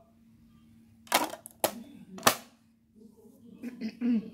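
A cough, then two sharp clicks about half a second and a second later, the second the louder: the lid of a Sylvania portable DVD player being snapped shut on a disc, after which the player starts loading.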